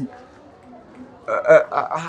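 About a second of quiet, then a man's voice starting about a second and a quarter in.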